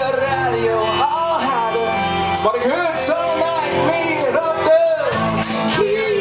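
Live band music: a strummed acoustic guitar under a wavering melody line, with fiddle and voice.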